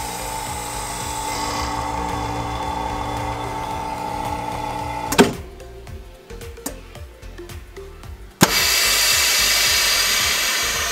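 Chamber vacuum sealer running through its cycle: the vacuum pump hums steadily for about five seconds, then a sharp click as it stops and the seal bar presses down. A few quieter seconds with faint clicks while the bag is heat-sealed, then another click and a loud hiss as air rushes back into the chamber.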